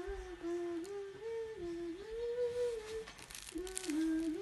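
A voice humming a slow tune, held notes stepping up and down between two or three pitches, breaking off briefly about three seconds in before resuming. Light rustling near the end.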